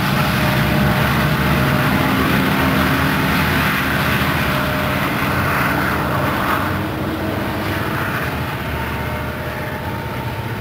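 BNSF SD70ACe diesel-electric locomotive (EMD two-stroke V16) running steadily as the rear distributed-power unit of a loaded coal train, with wheel-on-rail noise from the passing hopper cars. The sound grows a little fainter in the second half.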